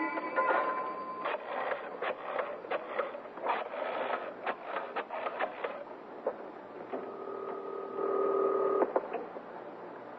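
Telephone sound effect: a run of dial clicks for about six seconds, then one steady ringing tone on the line lasting about two seconds, starting about seven seconds in.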